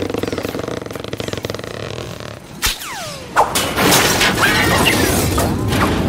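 Cartoon sound effects: a buzzing, rapidly rattling whirr for about two seconds, then a click, a short falling whistle and a crash with clattering that carries on to the end.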